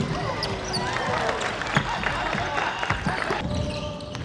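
Live basketball game sound on a wooden gym court: a basketball bouncing, with the short high squeals of sneakers on the floor and players' voices.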